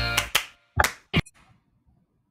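Recipe-video music with a few sharp knocks of a knife slicing an apple on a wooden cutting board, cutting off suddenly after about a second and a quarter.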